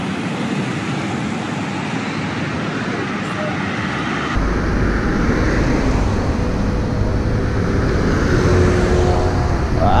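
Steady city street traffic noise with cars driving past. About four seconds in, the sound changes abruptly to a heavier low rumble with less hiss.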